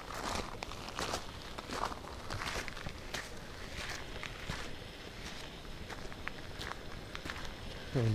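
Footsteps of a person walking on a dirt and gravel road, a short scuffing stroke with each step.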